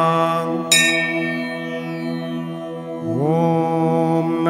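A steady musical drone of held tones runs under the gap between mantra repetitions. A bell is struck once, about a second in, and rings away slowly. Near the end a chanting male voice slides up into a long held "Om" that opens the next repetition.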